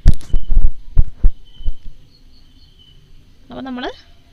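Loud, low handling thumps and knocks, several in quick succession over the first second and a half.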